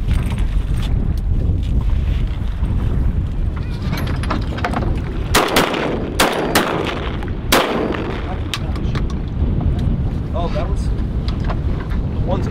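About five shotgun shots in quick succession, starting about halfway through and spread over some two seconds, the first two nearly together. Steady wind noise buffets the microphone throughout.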